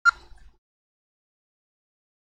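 A brief sharp sound at the very start, fading out within half a second, then dead silence with no room tone at all.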